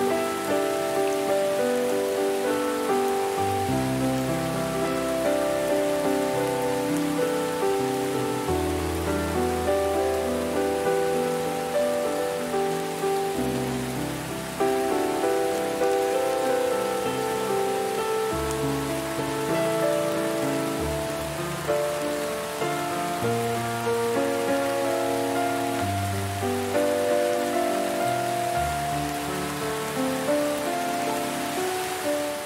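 Steady rain hissing, mixed with slow, calm music: soft notes that strike and fade, over low bass notes held for a few seconds each.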